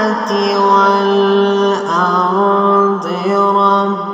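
A male voice reciting the Quran in melodic tajwid in maqam Bayat, holding long, steady notes and stepping to a new note twice.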